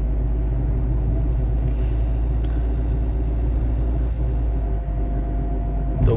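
Car engine idling, heard from inside the cabin: a steady low rumble with a faint steady hum over it.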